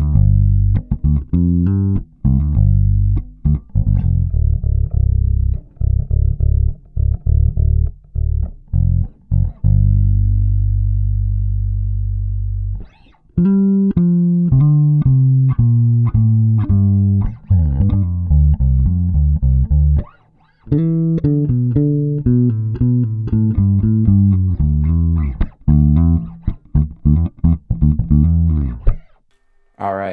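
Kiesel LB76 electric bass played through an Aguilar AG 700 head with the EQ flat and the Deep switch on, which boosts the bass frequencies. A run of plucked notes and lines, with one long held low note lasting about three seconds around the middle, brief breaks, and the playing stops about a second before the end.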